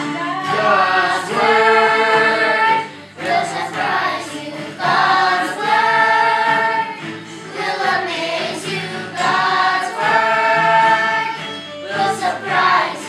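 A group of children singing a song together, in sustained phrases with short breaks between them.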